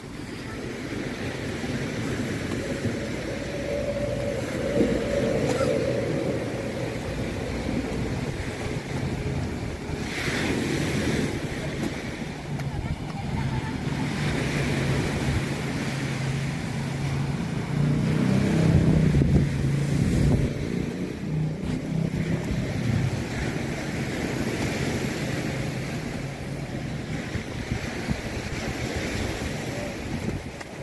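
Waves breaking on a beach, with wind on the microphone, under the steady hum of an engine that swells about eighteen seconds in and eases off after about twenty.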